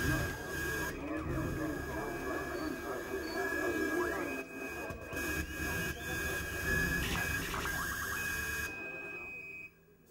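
Stage sound between songs at a live rock show: a steady high-pitched electronic tone from the band's amplification over indistinct voices. It cuts off abruptly about a second before the end.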